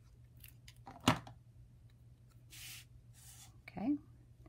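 Small paper-craft handling sounds: one sharp click about a second in, then two short scraping rustles as a liquid glue bottle's tip is worked over a small cardstock circle and the piece is picked up.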